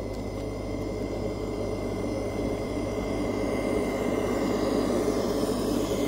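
1/14-scale RC dump truck driving closer over dirt, its engine sound running steadily with a thin high whine and getting a little louder as it comes near.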